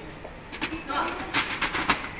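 Plastic paper cassette of a Canon LBP226dw laser printer being slid into the printer, a plastic rattle with several sharp clicks in the second half.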